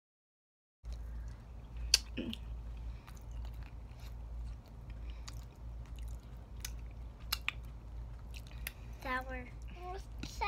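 Close-up mouth sounds of chewing pig's feet: wet smacks and sharp clicks, the loudest about two seconds in, over a steady low hum.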